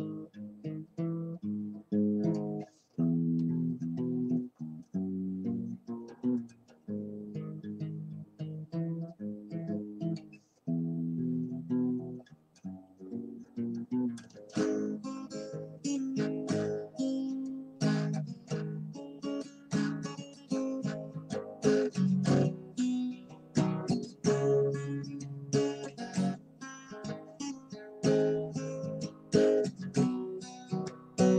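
Acoustic guitar playing the instrumental intro of a folk song, strummed chords changing about once a second. About halfway through the strumming turns busier and fuller.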